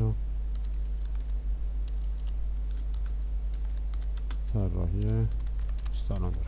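Computer keyboard typing: a scatter of light, irregular key clicks over a steady low electrical hum.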